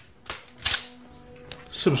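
Two short, sharp knocks about half a second apart, then a lighter click, from the soundtrack of a diner fight scene in a film.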